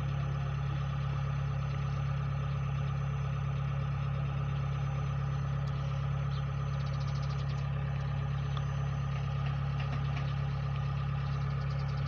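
Rice combine harvester's engine idling with a steady, unchanging drone, with the operator aboard before harvesting starts.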